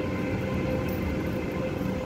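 Renfe Alvia S130 train pulling out of the station, its power car and coaches rolling past with a steady rumble and a steady mid-pitched tone.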